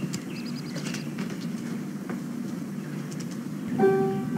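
Steady low outdoor background rumble from an old film soundtrack, with a quick high chirping trill of a bird about half a second in and a few faint clicks; piano music comes in near the end.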